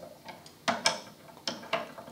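Hinged telescope tube rings being swung shut around the optical tube: about four short clicks and taps, in two pairs, the first a little after half a second and the second around a second and a half.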